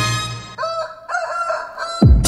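A rooster crowing once, a single multi-part call of about a second and a half, used as a sound effect in a recorded dance-music mix, coming in just after the preceding song fades out.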